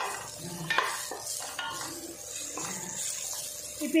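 A wooden spatula stirs chopped vegetables in a stainless steel pan, scraping across the metal with a few sharp knocks about a second in, while the vegetables sizzle as they sauté.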